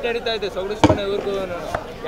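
A man talking close to a microphone, with one sharp knock a little under a second in and a fainter one near the end.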